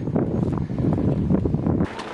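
Wind buffeting the microphone: a loud, low rumble that cuts off suddenly near the end.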